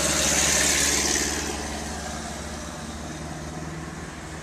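Old military jeep driving past and pulling away, its engine loudest at the start and fading steadily as it moves off.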